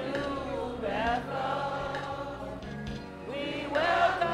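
A church congregation singing a gospel welcome song together, many voices in several parts, over steady held low notes.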